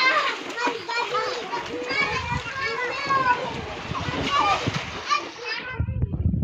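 Several young children's voices calling and chattering over one another as they play in a shallow pool, with some splashing of water.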